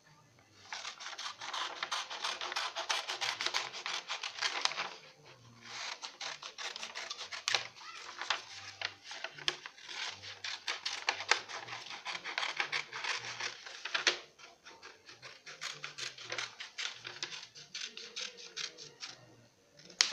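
Scissors cutting through a sheet of paper: a long run of snips with paper rustling. The cutting is almost continuous for the first five seconds, then breaks into separate sharp snips, growing quieter and sparser in the last few seconds.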